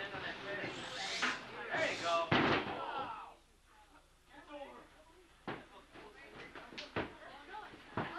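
Wrestlers' bodies hitting the ring mat: a loud thud about two and a half seconds in, with yelling voices over the first few seconds, then two sharper, lighter thuds in the quieter second half.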